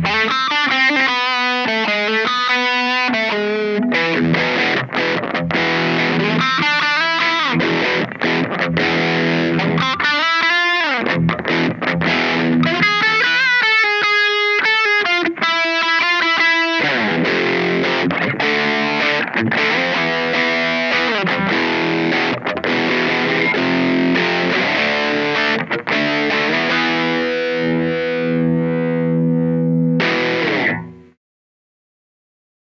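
Electric guitar with Seymour Duncan Distortion Mayhem humbuckers, played through a Wampler Tumnus Deluxe overdrive pedal set for high gain into a Blackstar amp's clean channel, giving a heavily distorted tone. Fast single-note lead runs take up roughly the first seventeen seconds, then come chords, ending on one long held chord.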